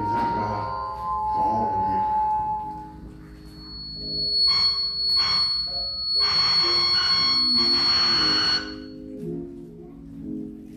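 Church keyboard music: held chords that change every second or two, with a man's voice singing or chanting over them in loud stretches through the middle, dropping away about a second before the end.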